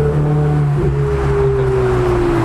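Road traffic passing close by on a busy street: car engines and tyres in a steady hum, with one tone falling slightly in pitch as a vehicle goes past in the second half.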